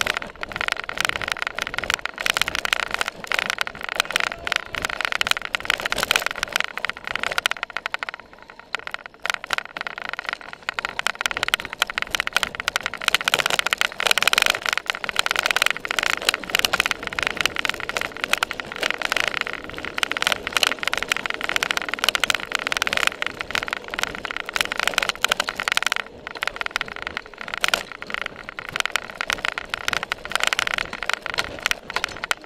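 Cyclocross bike ridden fast over bumpy grass and dirt, heard from a seat-mounted camera: a continuous dense rattle and clatter of the bike and mount, easing for a couple of seconds about eight seconds in.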